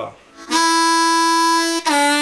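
Blues harmonica played without the mic: a long, steady 2-hole draw note, then a downward draw bend near the end that drops the pitch.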